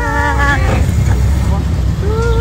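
Open jeep riding along a dirt track: a steady low rumble of engine and wind noise. A person's voice calls out with a long held note over the first moment.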